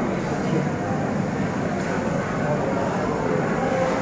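Steady market background din: indistinct voices over a continuous noisy rumble, with no clear words.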